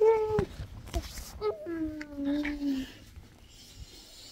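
Drawn-out, whiny vocal sounds from a person: a short held note at the start, then a longer one of about a second and a half that slowly drops in pitch, followed by quiet.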